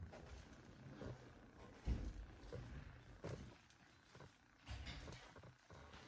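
Faint footsteps and camera handling noise as a handheld camera is carried across a carpet: a few soft low thumps about a second and a half apart over a light rustle.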